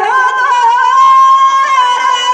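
A man singing Teja gayan, the Rajasthani folk devotional style, through a microphone. He holds one long, high note that wavers slightly in pitch.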